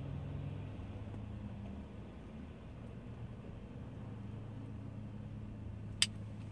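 A tobacco pipe being lit with a lighter and puffed inside a car cabin, over a steady low hum; a single sharp click near the end.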